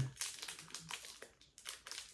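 Foil wrapper of a Pokémon booster pack crinkling in the hands, a run of short irregular crackles as the pack is handled before opening.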